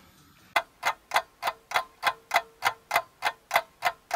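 Clock-ticking sound effect: sharp, evenly spaced ticks about three a second, starting about half a second in, over a faint steady tone.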